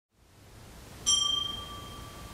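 A small bell struck once about a second in, its clear ring fading away: a sacristy bell rung to signal the start of Mass as the priest enters.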